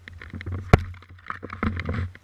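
Snowboard sliding over snow, heard through a camera mounted on the board's tail: a low rumble and scraping hiss broken by irregular knocks, with one sharp knock about three quarters of a second in.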